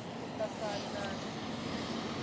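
Steady outdoor background hum with a few faint, short voice-like sounds in the first second.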